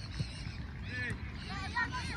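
Wind rumble on the microphone at a football pitch, with faint distant shouts from players and spectators about a second in and near the end, and one soft thud near the start.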